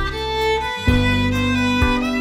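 Background instrumental music: a sustained bowed-string melody over held chords, with a beat about once a second. The chord changes a little under a second in.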